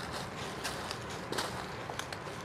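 Footsteps crunching through dry fallen leaves, a few steps about two-thirds of a second apart over a steady outdoor hiss.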